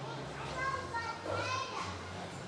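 A young child's high-pitched voice calling out in two short phrases, the second rising, echoing a little in a large hall.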